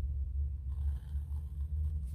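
Steady low hum, with faint scratching of a pencil lightly sketching lines on watercolour paper.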